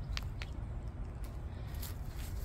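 Faint outdoor background: a steady low rumble with a few soft short ticks, two near the start and one near the end.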